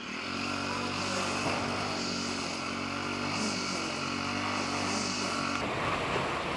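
A motor running steadily with a low, even hum and a hiss that swells every second or two; near the end it cuts to a plain rushing noise.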